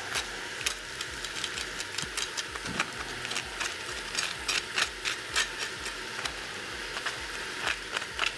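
Beef searing in a hot pot: a steady sizzle with frequent irregular sharp pops and crackles.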